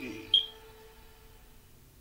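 End of a DVD trailer's soundtrack playing through a TV speaker, with one short, sharp, high ding about a third of a second in, the loudest thing here. A faint held tone then fades out, leaving a low hum.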